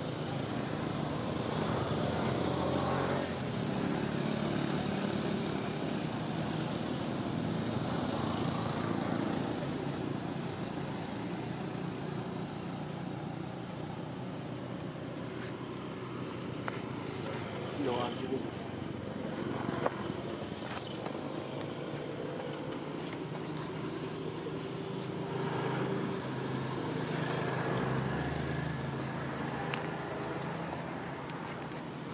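Outdoor background of people's voices and motor-vehicle noise, steady throughout, with a few brief higher-pitched sounds over it.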